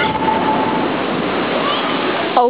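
Heavy sea surf washing against a sea wall, a steady rush of water and spray, with faint voices in the background.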